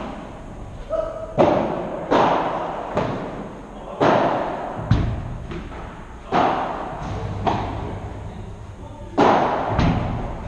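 Padel ball being struck with solid padel rackets and bouncing during a doubles rally, about ten sharp hits spaced roughly a second apart with a longer gap near the end, each echoing in a large indoor hall.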